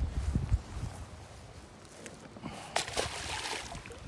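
A largemouth bass splashing into the pond as it is released: one short splash about three seconds in.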